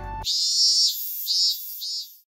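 Three short, high-pitched squeaky chirps from an edited-in sound effect, the first the longest; the background music cuts off abruptly just before them.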